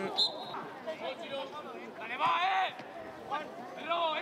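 Voices, mostly low talk, with one louder call a little past two seconds in and a brief high tone just after the start.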